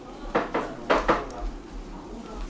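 Four sharp clinks of hard objects knocking together, in two quick pairs, each with a short ring.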